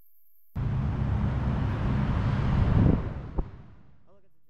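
Road rumble of wheels rolling on asphalt with a steady low hum. It starts suddenly about half a second in, builds, then fades out after about three seconds, with a single sharp click near the end.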